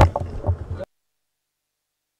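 Low rumbling thumps of handled press microphones with a fragment of voice, cutting off suddenly less than a second in to dead silence.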